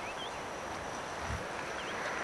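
Steady outdoor rush of wind and surf, with two brief high bird chirps, one just after the start and one near the end.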